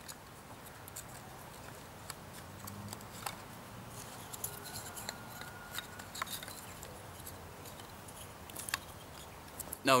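Dry wooden kindling sticks being snapped and slotted into the splits of a log: scattered sharp wooden clicks and cracks, a second or so apart.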